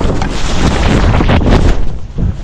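Loud, steady rush of wind buffeting an action camera's microphone while a skier plows through deep powder snow, with snow spraying over the camera.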